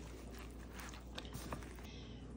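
Faint soft squishing and a few light clicks from gloved hands tossing chicken cubes in cornstarch in a foil pan.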